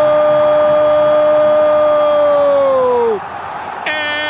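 A football commentator's long drawn-out goal shout, "gooool", held on one steady note over crowd noise. The note drops in pitch and breaks off about three seconds in, and a new shout starts just before the end.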